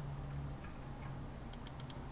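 Computer mouse clicking: a sharp click at the start, then a quick run of four clicks near the end, over a low steady hum.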